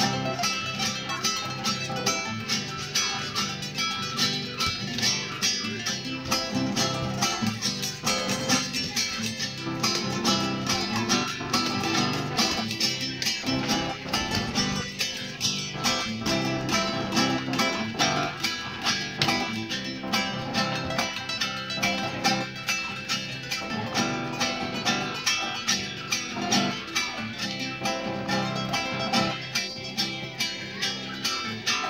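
Two acoustic guitars playing an instrumental together, one keeping a steady, quick strummed rhythm while the other picks out the melody in punteado style.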